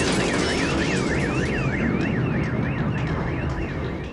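Electronic alarm siren, its pitch sweeping up and down about twice a second, over a loud, dense background noise.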